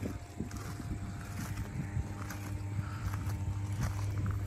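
Steady low electrical hum from the energised equipment of a 110 kV substation, a deep drone with fainter higher overtones.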